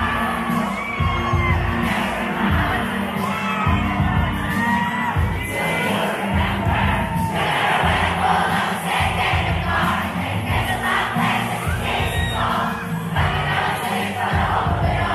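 Large crowd cheering and screaming, with many shrill shouts standing out in the first half, over pop music with a steady bass beat from the PA speakers.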